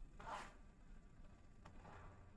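Faint rasping strokes of a stylus rubbing on a drawing tablet while erasing: one short stroke just after the start and a fainter one near the end.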